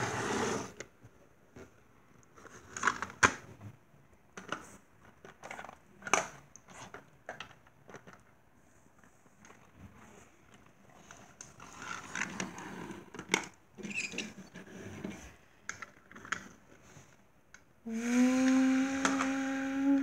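Scattered light clicks and taps of small plastic toys being handled and set down on a windowsill, with a short rustle of handling in the middle. Near the end a voice holds one steady note for about two seconds.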